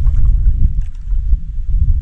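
Wind buffeting the microphone outdoors: a steady, loud low rumble with no voice over it.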